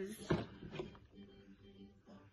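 A pause in a woman's talking: her voice trails off in the first half second, then only a faint, low, steady background hum.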